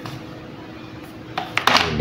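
Cut PVC boards being handled and laid down on a tiled floor: a few light clacks about one and a half seconds in.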